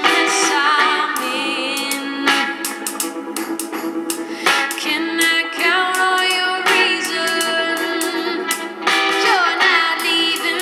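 A song with singing played through a homemade inverted electrostatic speaker (ESL) panel driven by a small class D amplifier from a phone. The sound is thin, with almost no bass, and a bit shouty.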